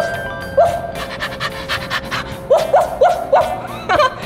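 Dog sound effect: a string of short rising yips with quick, regular panting between them, over background music.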